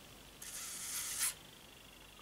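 A woman blowing out one breath through pursed lips, about half a second in and lasting nearly a second, a tense exhale while she waits to see a result.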